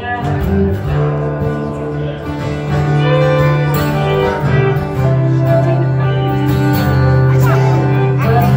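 Acoustic guitars strummed and picked together in a live acoustic performance, with a steady low bass line shifting every second or two under the chords.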